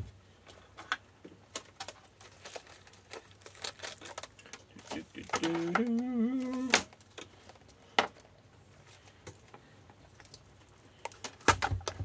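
Light clicks and knocks of objects being handled on a workbench as a charger and a multimeter are moved about. A man briefly hums about five seconds in.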